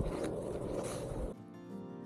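Rustling outdoor noise of walking across grass with a trekking pole. About a second and a half in it cuts off suddenly and background music of plucked strings begins.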